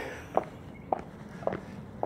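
Footsteps of shoes walking on a concrete sidewalk at an even pace: three steps, just under two a second.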